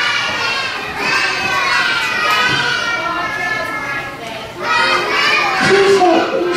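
A crowd of young children chattering and calling out all at once, many high voices overlapping, with a brief lull about four and a half seconds in.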